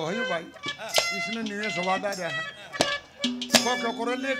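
Live Haryanvi ragni folk singing: a man's voice sliding and holding long bending notes over steady accompanying instrument tones, with a few sharp percussion strikes.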